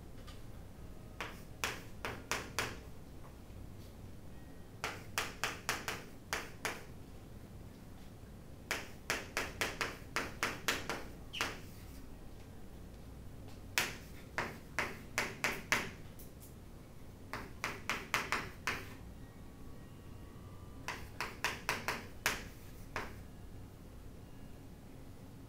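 Chalk writing on a chalkboard: groups of quick, sharp taps and clicks as letters are written stroke by stroke, about six bursts a few seconds apart with quiet pauses between.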